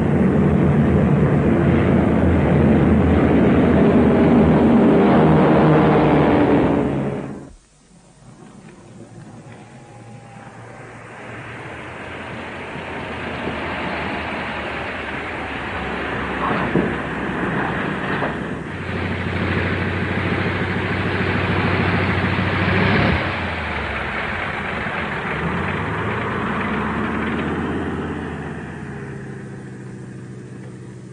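Propeller aircraft engines of a large formation flying over, loud and steady, cutting off abruptly about seven and a half seconds in. Then an aircraft's engines come in again, building up gradually and running through most of the rest before fading out near the end as the plane comes in to land.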